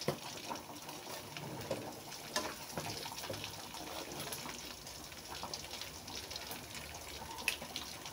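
Chicken pieces sizzling in a metal wok, with tongs scraping and clicking against the pan now and then as they are turned.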